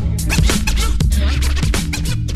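Hip hop music: a heavy bass beat with turntable scratching and no rapping.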